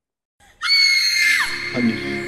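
A woman's loud, high scream held at one pitch for about a second, then falling away, after a half-second of near silence; background music comes in as the scream ends.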